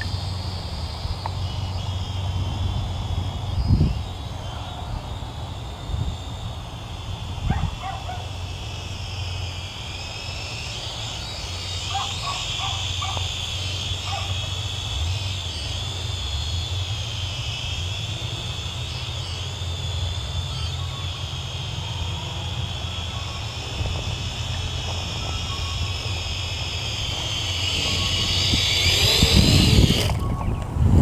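Small quadcopter drone flying overhead, its propellers giving a high whine whose pitch wavers up and down as it manoeuvres, over a steady low rumble; a few soft thumps early on, and the noise swells near the end.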